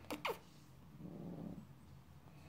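A cat's short meow, falling in pitch, with a fainter, lower call about a second later.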